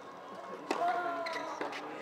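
A tennis racket strikes the ball on a serve with a sharp pop about two-thirds of a second in, and a fainter knock comes about a second later. Voices chatter in the background.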